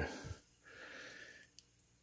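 A man's faint breath out through the nose, lasting about a second, followed by a tiny click.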